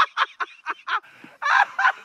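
A zombie's throaty vocal sounds: a rapid run of short guttural pulses, about five a second.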